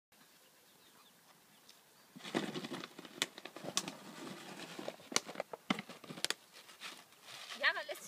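Dog and puppies scuffling in play on grass, starting about two seconds in, with several sharp crackling clicks from a plastic water bottle being grabbed and mouthed. A short gliding voice sounds near the end.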